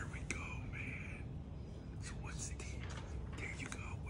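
Pencil writing on paper: short scratchy strokes, in a cluster near the start and another near the end with a few light taps between, over a low steady room hum.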